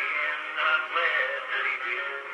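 A man singing a country song, played back acoustically on an Edison cylinder phonograph through its large flower horn. The sound is thin and boxy, with no deep bass and little high treble.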